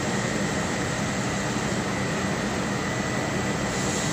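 Steady machinery noise: an even hiss over a low hum with a faint, constant high whine, unchanging in level.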